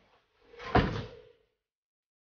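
A single loud bang like a door slamming, with a short ringing tone under it that fades within about a second.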